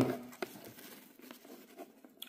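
Faint handling rustle as the battery box and camera are moved about, with a light click about half a second in and a couple of fainter ticks later.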